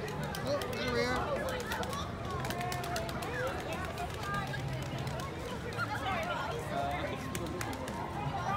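Overlapping voices of many people talking at once along a street, with no single clear speaker, and scattered light clicks.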